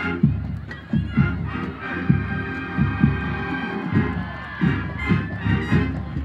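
Marching band playing, with bass drum strikes about twice a second under held brass notes, and a crowd cheering.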